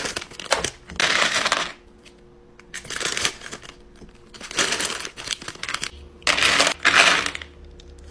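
Tiny miniature bottle charms clattering and rattling against each other as they are scooped by hand into a clear plastic bag, with some bag crinkle. The sound comes in about four bursts with short pauses between.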